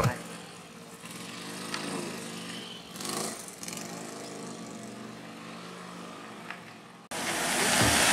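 A motor scooter's small engine running slowly and steadily, under a haze of outdoor noise. About seven seconds in, the sound cuts abruptly to louder, even outdoor noise.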